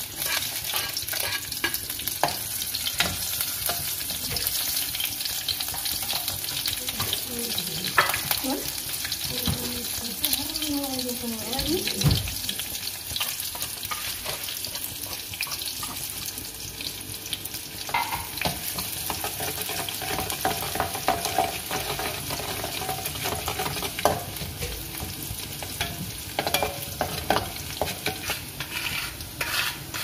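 Sliced shallots sizzling steadily as they fry in oil in an aluminium wok on a gas burner, with occasional sharp scrapes and clacks of kitchen utensils.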